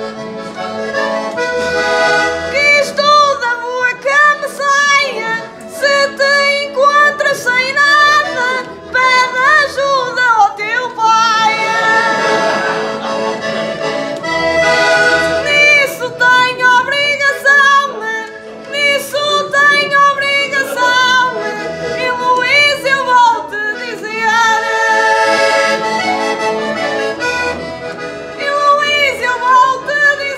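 Portuguese concertina (diatonic button accordion) playing an instrumental break between sung desgarrada verses: a fast, ornamented melody over short bass notes on a steady beat.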